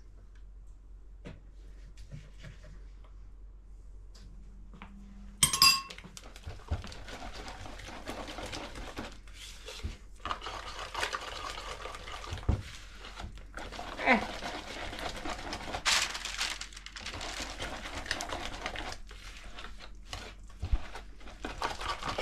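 Wire whisk beating a thick cornmeal batter in a bowl: a continuous wet stirring with small clinks of the whisk against the bowl. It begins about five seconds in, after a single clink, and before that it is fairly quiet.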